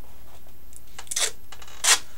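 Duct tape being pulled off the roll in short ripping pulls, a small one about a second in and a louder one near the end.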